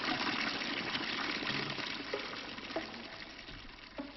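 A steady rushing noise, like running water, fading out gradually.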